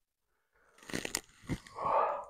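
Microphone creaking and crackling, a cluster of sharp clicks about a second in and a knock just after, as the arms swing; the creak is from the microphone, not from his joints. Near the end a breath drawn in as the arms go up.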